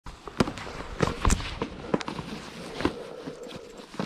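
Handling noise from a scooter's tire warmers: rustling with irregular sharp clicks and knocks, about five louder ones in the first three seconds.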